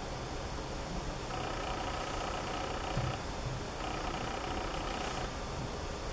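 Room tone: a steady faint hum with some faint held tones, and a slight knock about three seconds in.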